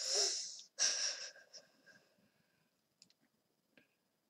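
A person's noisy breaths close to the microphone: two loud, hissy breaths in the first second and a half. A couple of faint clicks follow near the end.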